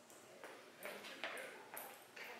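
Faint metallic jingling from a walking dog's collar and leash hardware: about four short clinks roughly half a second apart, each with a thin high ring.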